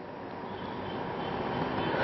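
Rushing noise of a passing vehicle, growing steadily louder.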